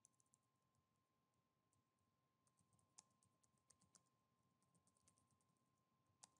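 Faint computer keyboard typing: quick, irregular clusters of key clicks, with a faint steady high tone underneath.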